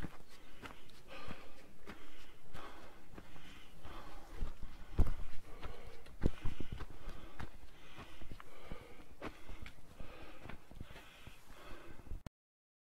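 A hiker breathing hard in quick, regular breaths while climbing a stony mountain path, with footsteps crunching and thudding on the gravel; the hard breathing is from the altitude. A few heavier thuds come about midway.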